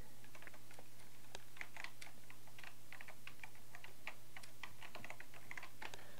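Typing on a computer keyboard: a quick, irregular run of key clicks, several a second, as a short chat message is typed.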